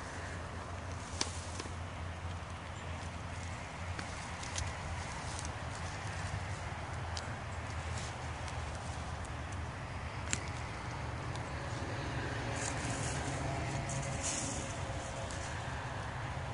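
Gloved hands digging through wood-chip mulch and soil, with scattered crackles and rustles of chips and roots over a steady low background rumble.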